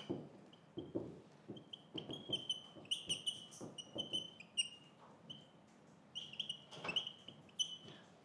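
Dry-erase marker squeaking and tapping on a whiteboard as a heading is written: a run of short, high squeaks, one per stroke, with soft taps of the tip between them.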